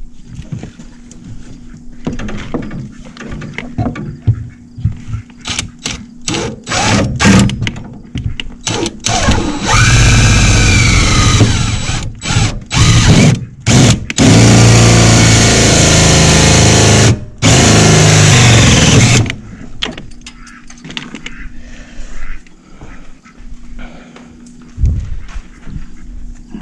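DeWalt cordless drill boring an inch-and-a-quarter hole through a truck's firewall, first in short stop-start bursts, then in one long steady run of about five seconds that cuts off suddenly.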